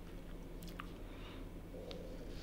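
Gloved hand kneading marinated lamb strips in a stainless steel bowl: faint wet squishing with a few light clicks, over a low steady hum.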